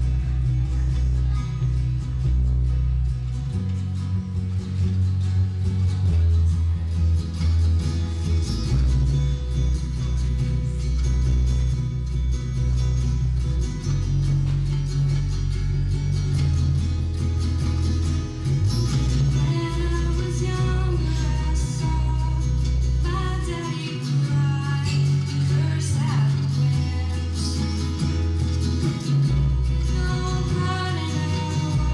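Live acoustic music: guitar playing a slow song with deep bass notes that change every couple of seconds. A girl's solo singing voice comes in about twenty seconds in.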